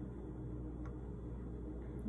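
Quiet room tone with a steady low hum and one faint tick a little under a second in.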